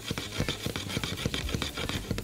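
A spatula stirring and scraping shrimp around a metal frying pan, in quick rapid scrapes and clicks over the sizzle of hot oil.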